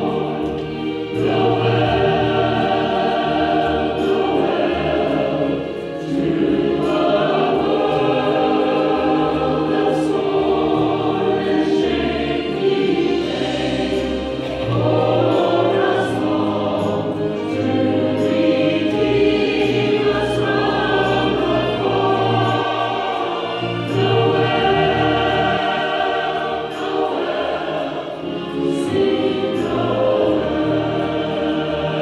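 Mixed choir of men's and women's voices singing together in long, sustained phrases.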